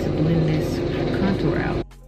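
Lawn mower engine running loudly, with a woman's voice speaking over it; the sound cuts off suddenly near the end.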